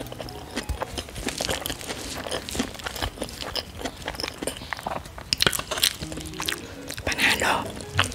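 Close-miked chewing and mouth sounds, a quick run of small wet clicks and crackles, with a metal spoon scooping food from a plastic bowl, over soft background music.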